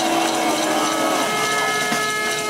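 Protest crowd making noise between a speaker's lines: a fast rattling clatter with several steady held tones over it.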